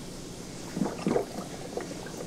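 Water in a small aquarium gurgling and splashing in a few short, irregular bursts starting about a second in.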